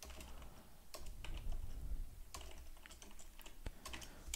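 Computer keyboard being typed on: faint, irregular keystrokes as a word is entered.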